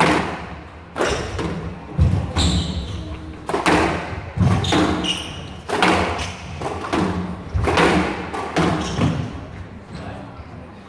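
A squash rally: the ball is struck by the rackets and smacks off the court walls, about a dozen sharp hits roughly a second apart, each ringing briefly in the court. Shoes squeak briefly on the court floor a couple of times.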